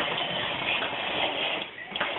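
Plastic wheels of a toddler's push-along walker toy rolling over a wooden floor, a steady rumbling clatter that drops away briefly near the end.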